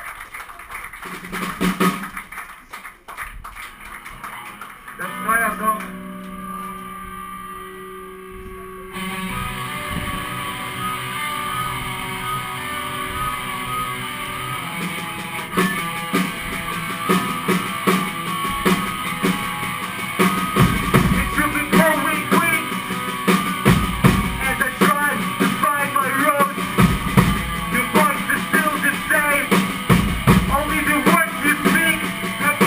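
Live melodic hardcore band between songs: a few seconds of scattered stage noise, then held guitar notes, then the next song starts about nine seconds in with guitars, and the drums come in and the full band grows louder past the middle.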